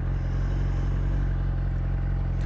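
Motorcycle engine running at a steady, unchanging speed while the bike cruises, with wind rushing over the microphone.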